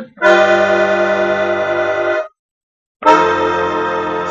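Bayan (Russian button accordion) holding a sustained chord for about two seconds: the dominant of a blues progression in C, played as a tritone-substitute seventh chord (F, B, E-flat). It stops cleanly, and after about a second's break a second sustained chord starts.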